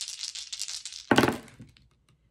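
A handful of zodiac dice rattled together in a cupped hand, then thrown onto a cloth-covered table about a second in, landing with a sudden clatter that quickly dies away.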